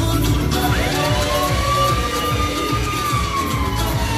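Loud live dance music with a steady bass beat. About a second in, a single siren-like tone sweeps up over it, holds, and slowly falls toward the end.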